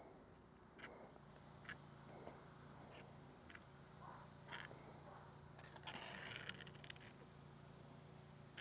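Near silence with faint, scattered scrapes and clicks of a metal skimming tool against a small electric lead-melting pot as slag is lifted off the molten lead, a few close together about six seconds in.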